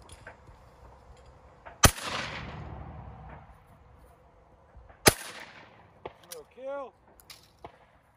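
Two shots from a Krieghoff over-and-under shotgun, about three seconds apart, the first followed by a long rolling echo. A few light clicks and a brief chirping call come after the second shot.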